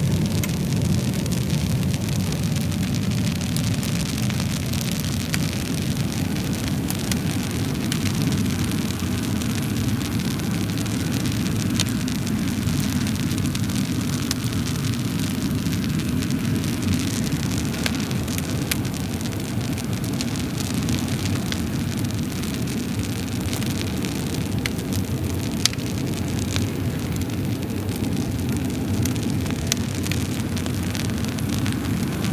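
Fire burning in a wood stove: a steady low rumble of flames with scattered sharp crackles and pops throughout.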